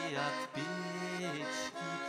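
Russian garmon (button accordion) playing sustained chords in a folk song, the chords changing with brief breaks about half a second in and again shortly before the end.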